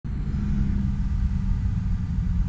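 Steady low mechanical rumble with a constant low hum.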